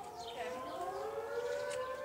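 A siren-like wail: one long steady tone that rises slowly in pitch.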